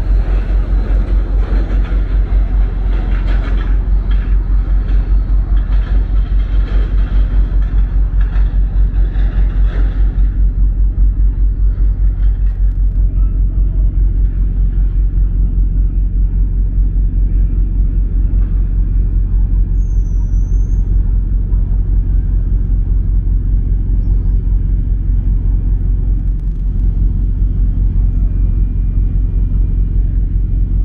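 A large ship's diesel engines running: a loud, steady low throb with a fast, even pulse. For about the first ten seconds a broader rushing noise lies over it, then fades.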